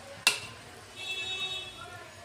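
A single sharp metallic clink about a quarter second in: a utensil striking the steel kadhai on the gas stove.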